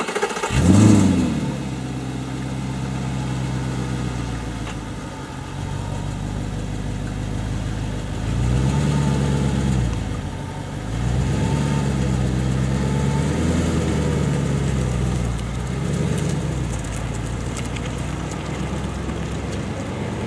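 Audi R8's 4.2-litre V8 starting with a sharp flare of revs about a second in, then settling to a steady idle. Several slow, gentle rises in revs follow later on.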